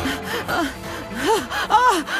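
A woman's distressed gasping cries: short rising-and-falling "ah" sounds, three of them, the last two louder, over soft background music.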